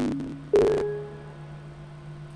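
Short electronic chime of rising tones over a low steady hum. The last tone comes about half a second in and rings out, fading over about a second. It is the Windows 11 startup sound as the virtual machine finishes booting to the lock screen.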